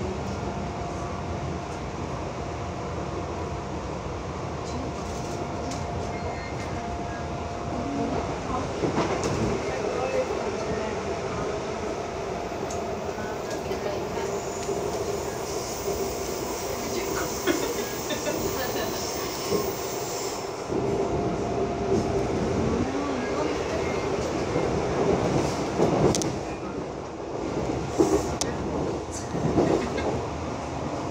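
Seoul Metro Line 2 electric train running at speed, heard from inside the car: a steady running noise with a constant motor tone, and a few sharp knocks from the wheels near the end.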